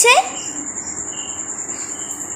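Cricket trilling steadily, a continuous high pulsing chirp, with a fainter, lower chirp coming and going about every half second.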